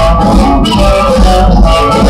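Live electric blues band playing: an amplified harmonica played cupped to a microphone, with electric guitars and a rhythm section.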